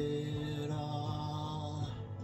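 A man's voice holding one long wordless sung note at a steady pitch, cutting off just before the end.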